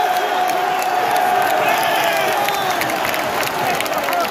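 Football crowd cheering and chanting to celebrate a goal, many voices holding one long shouted note, with clapping mixed in.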